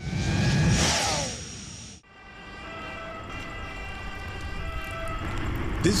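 Street noise with an emergency vehicle siren. The sound cuts abruptly about two seconds in, and then a steady, many-toned siren sound slowly grows louder.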